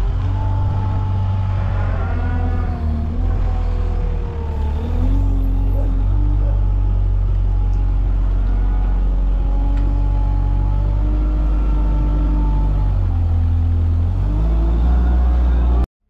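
Weidemann 2070 wheel loader's diesel engine running under load and revving up and down, its pitch rising and falling, as it lifts big straw bales off a truck trailer. The sound cuts off suddenly near the end.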